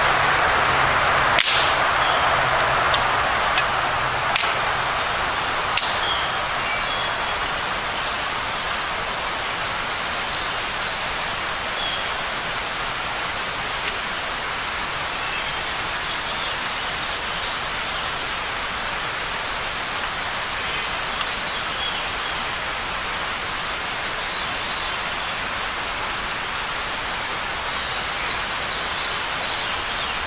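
Steady outdoor rushing noise, with three sharp snaps in the first six seconds as sticks of kindling are handled and laid in a steel fire ring.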